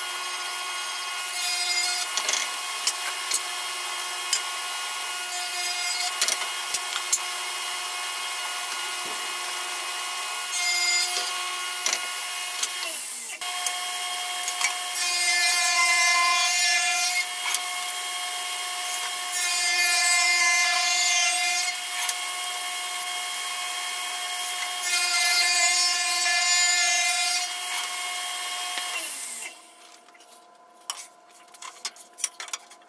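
Table saw running steadily, cutting walnut and then maple boards in six passes of a second or two each. Each pass comes through as a louder, rougher stretch over the motor's steady whine. The sound drops away near the end.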